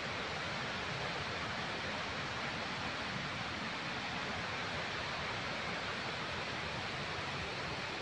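A steady, even rushing noise that holds at one level throughout, with no distinct events.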